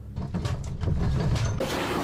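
A low rumble with a dense rattle and clatter of loose objects and fittings as a room shakes. It gets louder within the first second.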